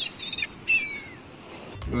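Birds chirping: a few short whistled calls, several falling in pitch, over a soft outdoor hiss.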